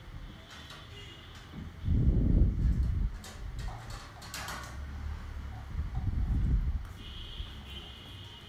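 Hot air rework gun blowing onto a laptop motherboard to solder a replacement resistor in place, with two low rumbling gusts of air, a few light clicks in the middle and a thin high whine near the end.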